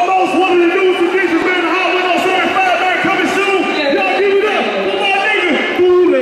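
A man's voice amplified through a concert sound system, rapping or calling into a handheld microphone on stage.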